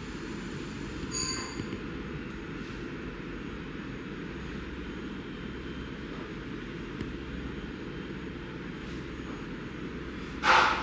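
Steady low rumbling room noise, with a brief high ringing ping about a second in and a faint click near seven seconds.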